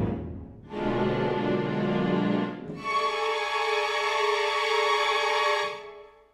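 Sampled orchestral strings from the Sonokinetic Espressivo library playing aleatoric string effects: a low, dense phrase, then about three seconds in a higher sustained chord that cuts off near the end.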